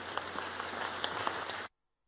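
Audience applauding, a dense run of clapping that cuts off suddenly near the end.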